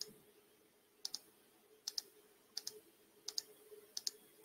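Faint clicking at a computer: a single click at the start, then four pairs of sharp clicks about every three-quarters of a second, over a faint steady hum.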